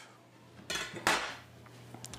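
A large kitchen knife being put down: a short scraping rustle, then a single sharp metal clink on the counter about a second in, followed by a few faint ticks.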